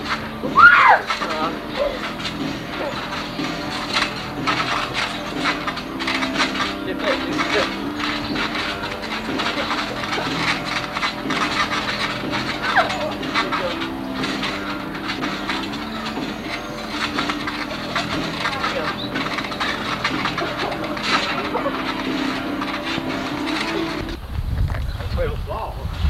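Several people jumping on a trampoline: a steady run of bounce thumps, with a squeal about a second in and scattered voices, over music playing throughout.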